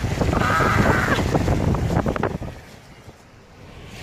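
Wind buffeting the microphone at a car's side window while driving, loud and rough, with a brief high cry about half a second in. About two and a half seconds in it drops to the much quieter sound of the moving car.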